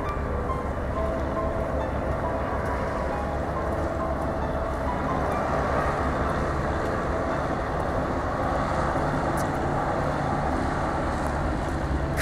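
Steady low rumble of outdoor noise, like distant traffic, with faint music on and off under it.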